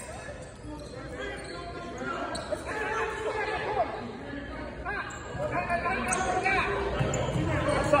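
A basketball bouncing on a hardwood gym floor, a few separate knocks ringing in the large hall, over the voices of players and spectators.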